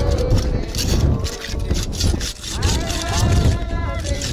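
Repeated rough scraping strokes of a hand tool on concrete, as a worker seals the tomb, over wind rumbling on the microphone.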